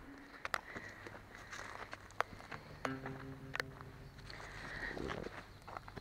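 Quiet footsteps with scattered sharp clicks and knocks. About three seconds in, a faint steady hum of several low tones holds for under a second.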